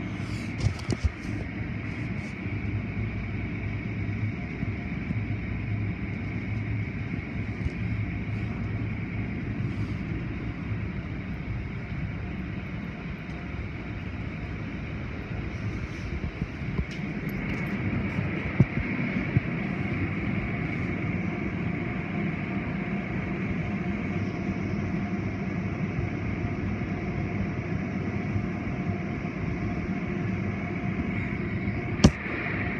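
Automatic tunnel car wash heard from inside the car: a steady rumble of water spray and spinning cloth brush strips slapping and rubbing over the car, with a few sharp knocks near the start and again past the middle.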